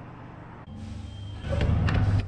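Quiet outdoor background noise, then a low rumble that swells about halfway through and is loudest near the end, like passing road traffic.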